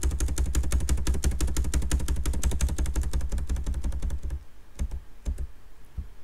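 Computer keyboard typing: a fast, even run of key clicks with a low rumble under it, stopping about four and a half seconds in, then a few single clicks.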